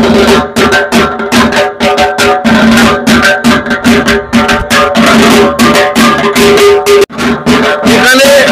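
Dhak drums beaten with sticks in a fast, steady rhythm of sharp strokes, with pitched tones sounding under the beat.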